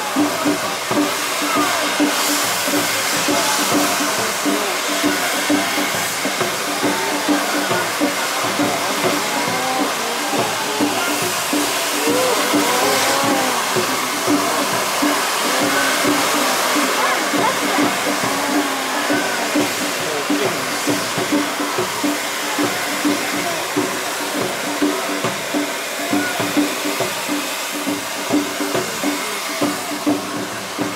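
Several hand-held tezutsu tube fireworks spraying sparks with a continuous rushing hiss, joined by music and crowd voices.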